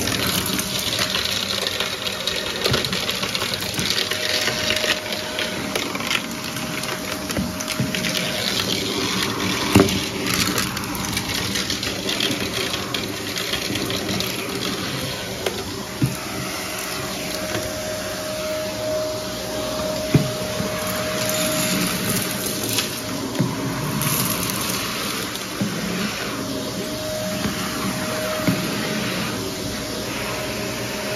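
Vacuum cleaner running steadily as its bare wand sucks small debris off carpet along the baseboard, with a steady tone under the suction noise. Bits of debris click sharply up the wand now and then, most sharply about ten, sixteen and twenty seconds in.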